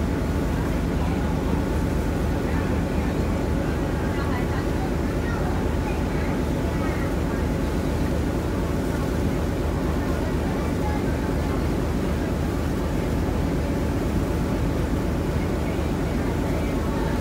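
Steady low drone of a Star Ferry's engine with the rush of harbour water, heard on board, with faint voices in the background.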